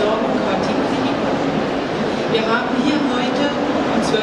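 A woman speaking into a microphone over a public-address system in a reverberant hall, with steady background noise underneath.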